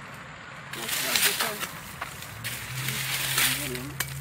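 Rustling and scraping in dry leaves, twigs and soil during a search for a detector signal, with quiet voices murmuring. A steady low hum comes in about halfway through.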